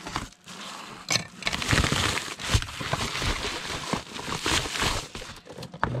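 A yellow padded mailer envelope being torn open and crinkling as it is handled, with irregular rustles and a few sharp crackles, while a cardboard box is pulled out of it.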